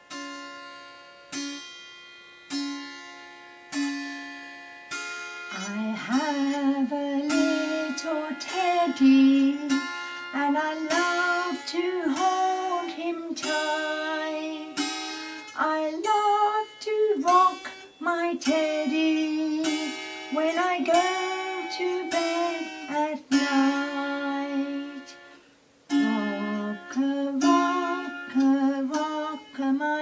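Kantele, a Finnish plucked zither, played note by note, each plucked string ringing and fading. From about six seconds in, a woman sings a slow melody over it, with a short pause about 25 seconds in.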